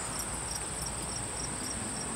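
Chorus of crickets singing outdoors in late summer: a steady, unbroken high-pitched trill.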